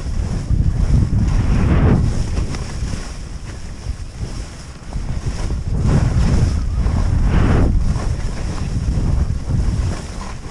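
Wind rushing over the microphone during a fast ski descent, mixed with skis scraping and hissing through chopped-up chunky powder. It surges louder in the first two seconds and again from about six to eight seconds, easing in between.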